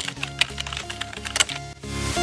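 Computer-keyboard typing clicks, an irregular run of keystrokes used as a sound effect, over background music.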